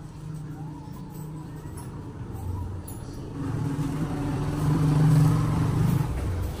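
A motor vehicle's engine running, growing louder from about halfway through and loudest near the end.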